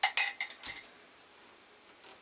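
A metal spoon clinking against a ceramic mug: a quick run of about five sharp clinks in the first second, then quiet.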